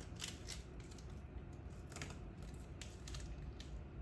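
Oracal 813 stencil mask film being peeled off a painted wooden sign, a faint, irregular crackle and tick as the vinyl lifts away, coming off cleanly.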